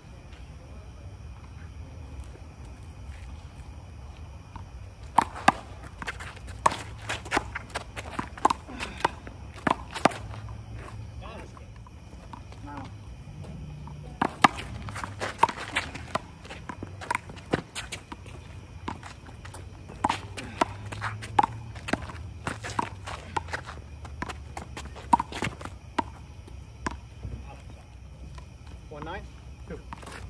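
Sharp smacks of a handball struck by hand and rebounding off a concrete wall and court, in quick runs of hits starting about five seconds in, with sneakers scuffing on the concrete between them.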